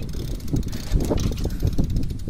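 Wind rumbling on the microphone of a camera carried on a moving bicycle, with uneven clicks and rattles from the bike rolling over rough asphalt.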